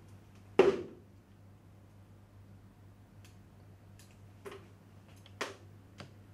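Plaster nippers cracking set investment stone off a flexible nylon denture: one sharp crack about half a second in, then a few fainter clicks and snaps.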